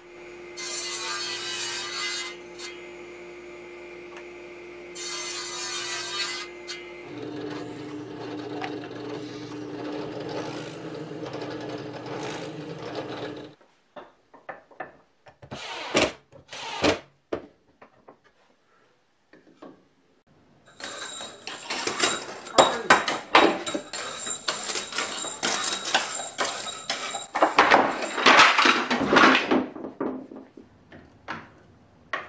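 Table saw motor running with a steady hum, cutting wood twice in the first few seconds; the hum drops slightly in pitch partway through and then stops abruptly. After that come scattered knocks of wooden parts being handled, and near the end a long, loud spell of rapid clicking and clattering.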